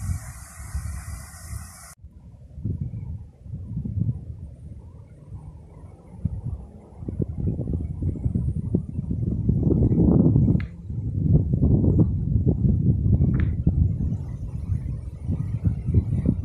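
Wind buffeting a phone's microphone outdoors: a low, gusty rush that swells and drops, louder in the second half. A few brief high chirps or clicks stand out above it.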